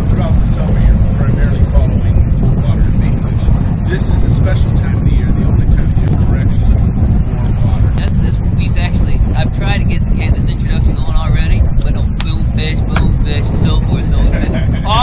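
Loud steady low rumble of a charter fishing boat running on the water, with men's voices partly buried under it, more so in the second half.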